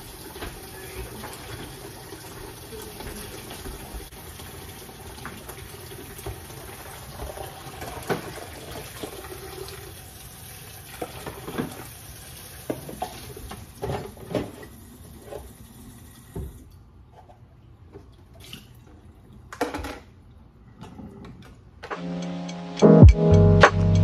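Kitchen tap running into a sink while dishes are washed, with occasional knocks and clinks of dishes and pans. The water shuts off about 16 seconds in, and a few more clinks follow.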